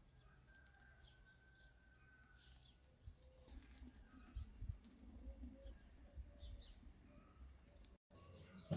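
Near silence: faint outdoor ambience with faint bird calls.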